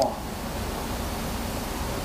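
Steady, even hiss of room noise in a mat room, with no distinct thumps or voices.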